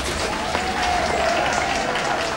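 Applause: a crowd clapping densely and steadily, with a thin wavering tone held above it.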